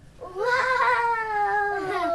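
A young child's long, high-pitched squeal of excitement, a single held cry that starts about a third of a second in and slowly falls in pitch.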